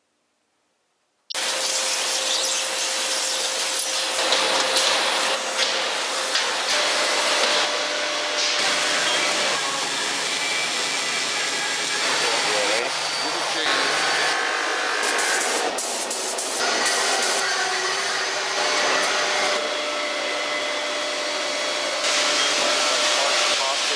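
Metal-shop machinery and power-tool noise, a dense steady din that starts suddenly about a second in and changes character every few seconds.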